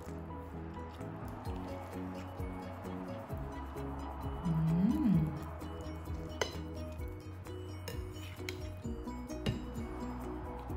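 A table knife slicing through a steamed meatloaf and clinking against the plate a few times, the sharpest clinks about six and nine and a half seconds in, over background music.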